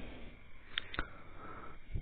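Quiet room tone in a pause between spoken sentences, with two faint clicks a little under a second in and a soft breath or sniff from the narrator.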